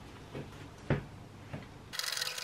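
Three light clicks, the clearest about a second in, from a hand screwdriver being set to and turned in the screws of a door lever handle.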